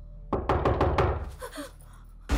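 Loud, rapid knocking: about five sharp knocks in quick succession starting about a third of a second in.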